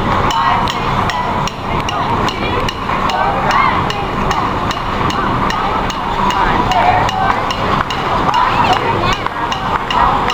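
Sharp, evenly spaced clicks at about three a second, like a metronome keeping time, over a background of voices.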